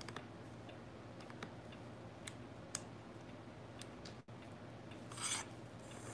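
Faint handling of a telephoto lens and camera body: scattered small clicks, then a short rasping rub about five seconds in.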